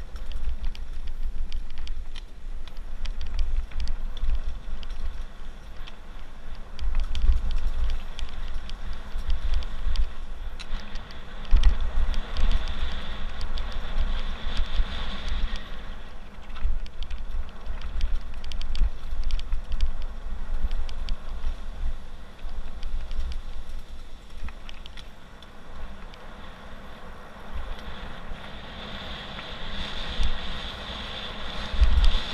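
Mountain bike descending a dirt and gravel trail: tyres rolling over the rough surface, with frequent small rattles and knocks from the bike over bumps. Heavy wind buffeting on the microphone throughout.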